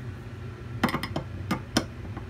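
A handful of sharp clicks and knocks as a tool works in the top of a red fire-alarm pull station to open it for reset, over a steady low hum.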